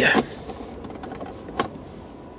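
A couple of faint, short clicks from the rear centre console of a car as the cigarette lighter is pulled out of its socket, over a low background hum.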